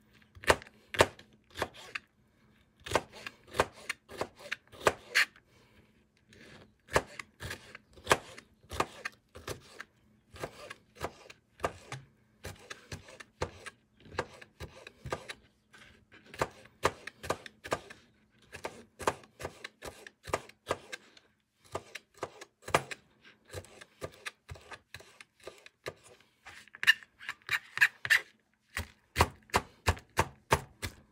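Kitchen knife dicing green bell pepper on a plastic cutting board: quick, even taps of the blade striking the board, about three a second, in runs with brief pauses.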